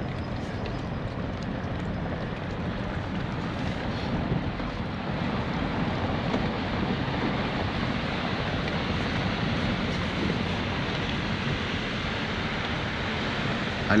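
Steady wind noise buffeting the microphone, growing a little louder about five seconds in.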